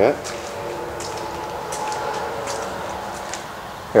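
A steady hum with a few faint steady tones running through it, and a few light ticks scattered over it.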